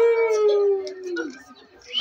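A long, drawn-out exclamation of "wooow" that rises quickly in pitch and then slowly falls, lasting about a second and a half, followed by a few faint clicks.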